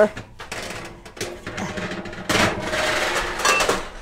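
Metal bakeware clattering and scraping at the oven, with scattered clicks and knocks that get busier about halfway through, as a tray of cookies is taken out.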